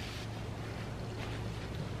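Steady background hiss with a faint low hum: indoor room tone, with no distinct event standing out.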